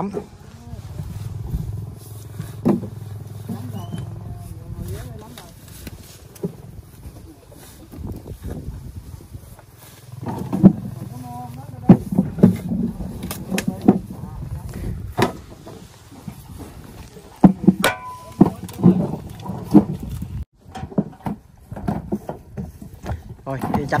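A tractor engine running low and steady for the first few seconds. Then comes a run of sharp knocks and thuds as a hoe chops into the mud beside a trailer wheel.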